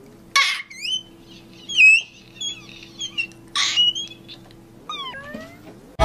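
A run of about six short, high, gliding meow-like calls, with a few quick rising chirps near the end, over a low steady hum.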